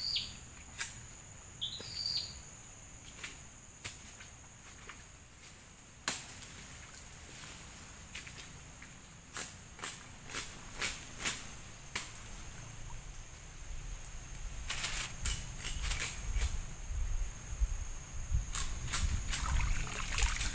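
Water sloshing and splashing as a person wades through a muddy stream and lifts a fishing net, with scattered sharp splashes that grow busier and louder in the last six seconds. A steady high insect drone runs underneath, and a bird chirps twice near the start.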